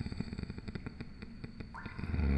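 Water and cave ambience: many quick, irregular small water clicks and drips over a steady low rumble.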